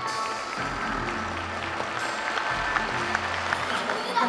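Audience applauding over show music, the clapping swelling in about half a second in and carrying on over a low sustained music bed.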